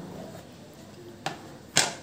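Quiet room tone, then a sharp click a little past a second in and a short hiss soon after: a gas stove burner being switched on and lighting.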